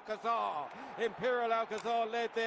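Speech only: a man's voice at low level, horse-race commentary from the live race stream.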